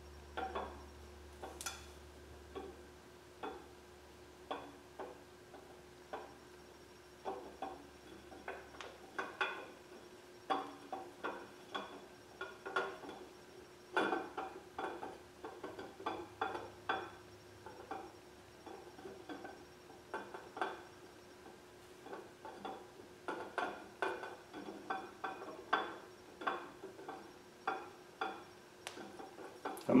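Camshaft being slid and wiggled through the cam bearings of a small-block Chevy 350 block, giving light, irregular metallic clinks and taps as the lobes and journals touch the bearings. A faint steady hum runs underneath.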